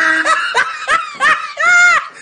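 A person laughing in a run of short, high-pitched bursts about three a second, ending in a longer drawn-out one near the end.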